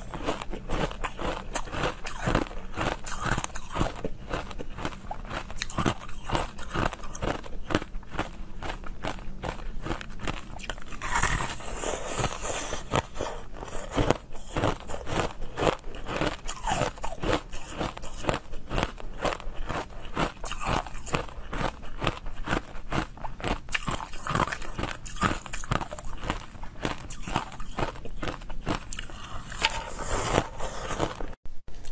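Close-up biting and chewing of hard frozen, blue-coloured ice. A dense, continuous run of crisp crunches and cracks follows each bite, several a second.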